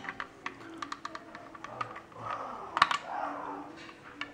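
Hard plastic clicking and tapping as a small plastic piece is worked into the square socket of a hollow plastic statue base, with a louder cluster of clicks a little before three seconds in.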